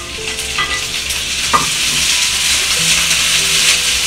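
Bracken fern shoots stir-frying in hot oil in a wok, sizzling and getting louder about a second and a half in as a wooden spatula stirs them, with a few sharp clicks of the spatula on the pan.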